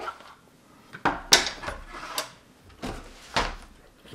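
Objects, among them a hard plastic case, being picked up and moved about on a table: a handful of short knocks and clatters, the loudest a little over a second in.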